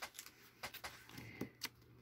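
Paper catalog pages being turned by hand: a few faint, short paper rustles and ticks.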